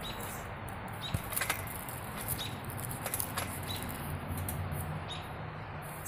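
A trampoline being jumped on: a few faint knocks from the mat and springs over a steady hiss.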